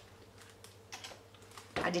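A few faint light clicks and taps as a heat embossing tool is set down on the craft desk and the card is handled, after the tool's blower has stopped.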